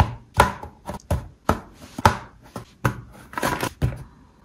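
Laser-cut plywood pieces being pressed out of their thin sheet by thumb, giving about a dozen sharp wooden snaps and cracks, irregularly spaced, some followed by a short rattle.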